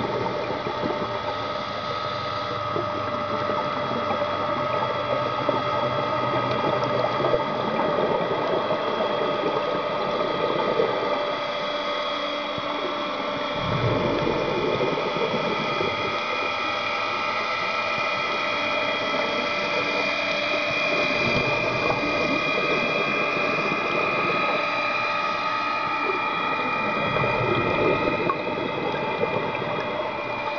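Underwater ambience picked up by a camera in its housing: a steady mechanical hum of several held tones, with a rush of a scuba diver's exhaled bubbles every several seconds.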